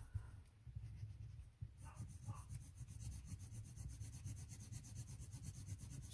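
Spectrum Noir Colour Blend coloured pencil shading a swatch on paper: faint rubbing in rapid, even back-and-forth strokes, starting a little under two seconds in.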